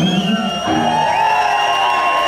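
Live band music: a psychobilly band playing, with an electric guitar's held, ringing notes over the band.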